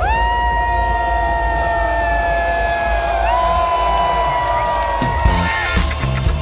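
Live electronic music played loud over a festival sound system: long held synth notes that slide up into pitch at their start, over a steady deep bass, with a crowd cheering underneath. Drum hits come in near the end.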